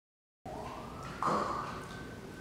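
A siren wail that starts about half a second in, rising in pitch and then holding at one steady pitch.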